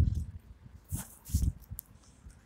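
A few soft low thumps with a brief rustle about a second in, from the phone being handled and the filmer stepping on paving stones.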